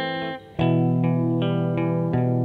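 Instrumental guitar music: sustained chords ring, break off briefly about half a second in, then a new chord is struck and held, with further notes changing about a second and a half in.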